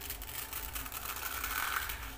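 Crisp fried sev, thin gram-flour and poha noodles, crackling in a dense run of tiny snaps as hands crush and break a handful. The crackle grows louder toward the end and shows how crispy the sev has fried.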